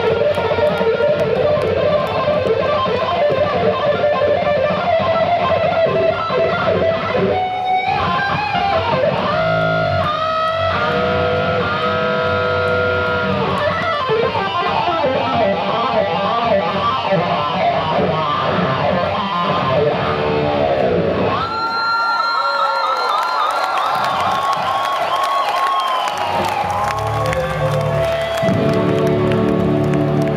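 Amplified electric guitar playing a live lead solo, melodic runs with bent and wavering notes. The low end drops out for a few seconds in the second half, leaving the lead guitar alone, then a fuller sound comes back near the end.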